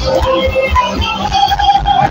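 Live, amplified Nigerian gospel praise music: a held vocal melody over a steady drum and bass beat.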